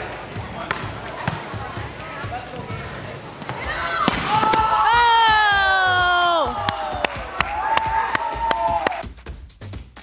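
Volleyballs bouncing and being struck in a gym, a string of sharp thuds, with a long held pitched sound in the middle that slides down in pitch, and a shorter held tone after it.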